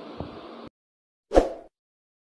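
Steady background hiss that cuts off suddenly, then silence, then a single short pop sound effect from a subscribe-button animation.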